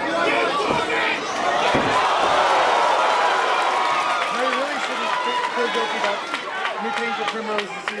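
Spectators cheering and shouting around a grappling match, the crowd noise swelling about two seconds in, just after a dull thud, then individual voices shouting in the second half.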